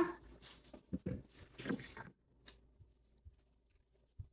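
A few faint, short mouth sounds from a child eating candy in the first two seconds, then near silence.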